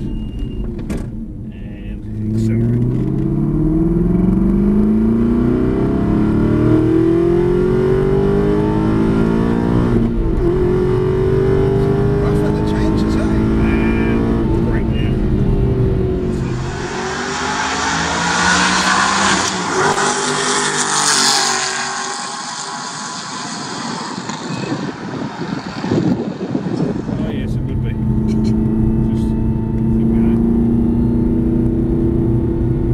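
Aston Martin V8 Vantage's V8 engine heard from inside the cabin on track, accelerating hard: its note rises and drops back several times as it changes up through the gears. A loud rushing hiss takes over for several seconds past the middle as the engine eases off, and the rising engine note returns near the end.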